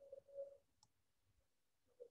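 Near silence: room tone, with a faint brief hum in the first half-second and a single faint click a little under a second in.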